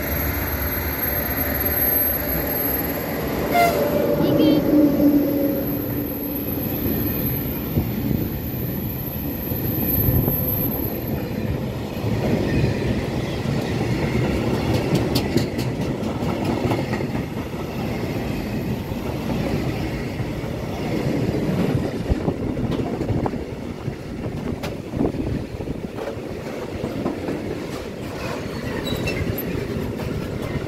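Freight train of flat and covered wagons rolling slowly past behind an electric locomotive, with wheels clattering over the rail joints. A short horn blast sounds about four seconds in.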